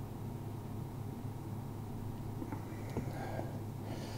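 Beer being poured from a bottle into a stemmed glass chalice, faint, over a steady low hum, with a few faint clicks of glass about three seconds in.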